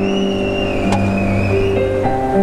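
Live band music without vocals: held keyboard chords over a sustained bass note, with a high, slightly wavering note held through most of it.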